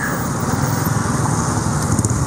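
Small engine running steadily at road speed, with road and wind noise from the moving vehicle that carries the camera.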